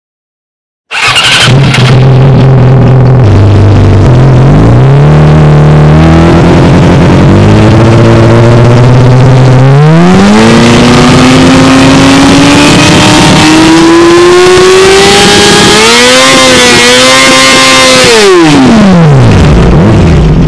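Yamaha YZF-R6's inline-four engine through an SC Project S1 slip-on exhaust, coming in about a second in at idle. The revs then rise in two steps and climb steadily for about six seconds. They hold high for about two seconds and drop back near the end.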